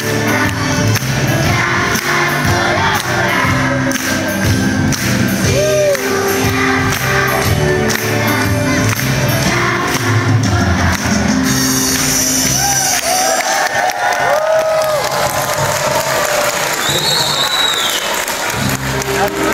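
A children's choir sings over music with a repeating bass line in a large hall. About twelve seconds in, the bass line stops and the crowd cheers and whoops.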